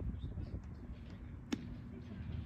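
Steady low outdoor background noise with one sharp click about one and a half seconds in, followed by a faint steady hum.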